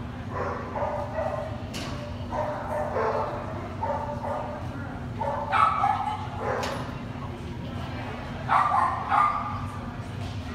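A dog barking and yipping over and over in short calls, loudest twice toward the end, over a steady low hum.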